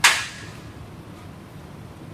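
A single sharp bang at the very start that dies away within about half a second, followed by steady low room noise.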